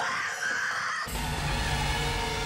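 Horror film trailer sound design: a sudden shrill screech for about a second, cut off abruptly by a deep low rumble under dark music.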